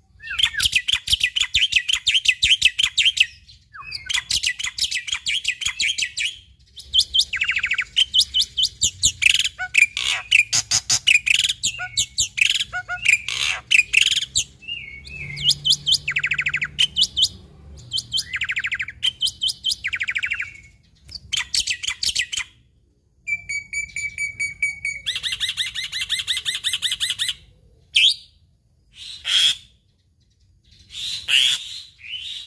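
Black-winged myna (jalak putih) singing in bursts of rapid chattering phrases, each a few seconds long, broken by short pauses. A steadier whistled phrase comes about three-quarters of the way through.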